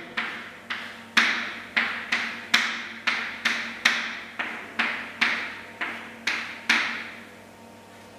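Chalk on a chalkboard: a string of short, sharp strokes, about two or three a second, as lines and letters are written. The strokes stop about a second before the end.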